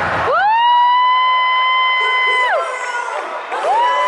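A young girl's shrill, high scream held steady for about two seconds, then a second, shorter scream near the end, close to the microphone and over a much fainter arena crowd.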